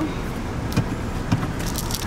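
Steady low rumble of a Chevrolet car's cabin as it runs, with a few short clicks and light rattles about a second in and near the end.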